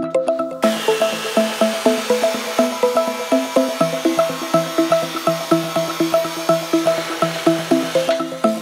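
Background music with a steady repeating note pattern, over which an abrasive chop saw cuts steel square tubing: a high whine and hiss that comes in about half a second in and fades near the end.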